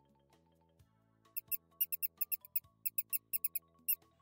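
Cartoon mouse squeaking: a quick run of short, high squeaks in little clusters, starting over a second in. Under it plays soft mallet-percussion background music.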